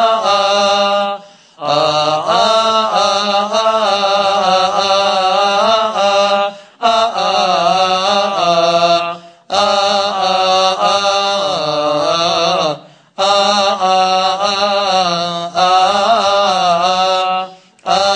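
A priest's solo Coptic liturgical chant. It is sung in long phrases that wind up and down in pitch, broken by several short pauses for breath.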